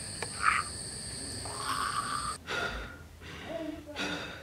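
Steady night-insect chirring with two short, louder noises over it; the chirring cuts off suddenly a little over two seconds in, leaving fainter sounds.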